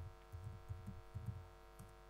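Faint, irregular laptop keystrokes, soft low thuds with light clicks, picked up through the lectern microphone over a steady electrical hum from the sound system.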